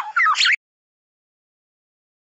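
A short phrase of white-rumped shama song, quick whistled notes sliding up and down, cut off suddenly about half a second in.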